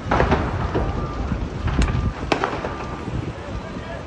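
Outdoor street sound from a phone filming a fire: distant people's voices over a low rumble, with two sharp cracks about two seconds in, half a second apart.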